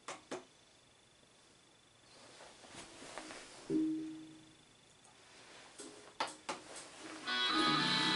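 A few sharp handling clicks and knocks, with a single electric guitar note ringing out for about a second near the middle. Near the end, loud electric guitar music starts up.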